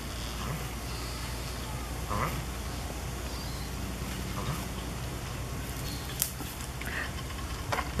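A male African spurred (sulcata) tortoise mating, making a few faint, short calls over a steady low background hum.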